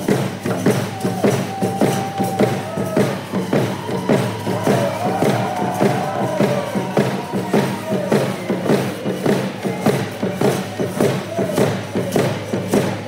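Handgame song: a group singing together over a steady pounding beat of about three beats a second.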